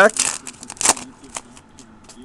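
Baseball card pack wrapper being torn open and crinkled by hand: a few sharp crackles in the first second and a half, the loudest just before one second in, then faint rustling.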